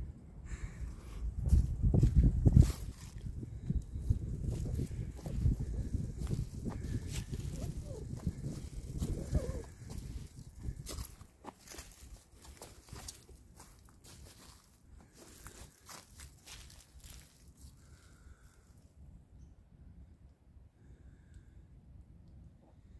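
Footsteps and camera handling by a walker on the forest floor. Heavy low thumps and rumble on the microphone come in the first half, then crackling steps over dry leaves and twigs stop near the end.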